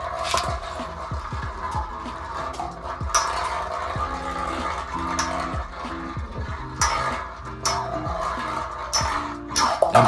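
Background music plays over Metal Fight Beyblade spinning tops (Storm Pegasus and Rock Leon) battling on a hard, metal-like dish stadium, with a few sharp clacks as the tops collide.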